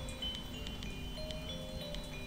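Soft background music with short chime-like bell notes.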